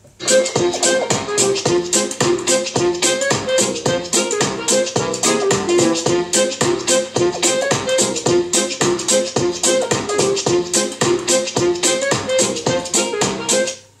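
Music with a fast, steady beat played through two Coloud Bang portable speakers linked together by cable. It starts abruptly just after the start and cuts off near the end.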